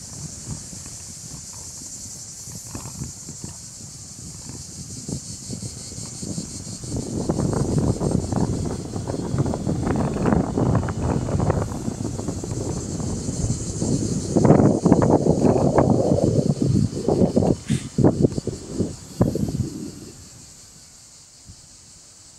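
A steady high-pitched insect chorus. From about seven seconds in until about two seconds before the end, it is covered by loud, irregular rumbling and crackling noise.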